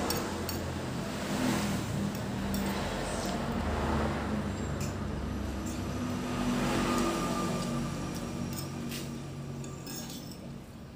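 A metal spoon and fork clinking and scraping against a ceramic plate while eating, in short scattered clicks. Under it runs a low engine rumble that swells and fades several times.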